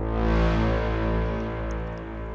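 A held synthesizer note from Ableton's Operator FM synth heard only through a reverb set to 100% wet with a long decay: the note itself almost disappears and only its ambience remains, a sustained wash of tones that slowly fades in the second half.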